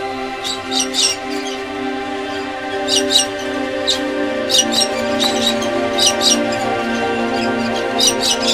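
Soft sustained music notes, with short high bird chirps laid over them in quick clusters of two or three, recurring several times.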